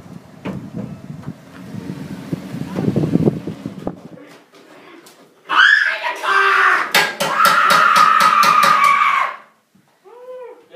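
Rough rustling and scuffling noise with a few knocks for the first few seconds. Then, about five and a half seconds in, a loud drawn-out voice-like sound is held for about four seconds and cuts off sharply.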